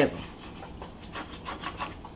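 A wooden slotted spatula scraping against a cast-iron skillet and through baked melted cheese, in a run of short, irregular scrapes.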